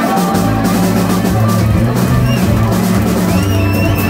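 Live blues-rock band playing: electric bass, drum kit and electric guitar. The bass and drums come in together about a third of a second in.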